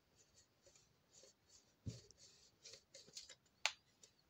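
Faint, intermittent scraping and rubbing of a teflon-headed tool slid over the thin sheet metal of a phonograph horn, smoothing out a small ridge in the dent. A sharp click near the end.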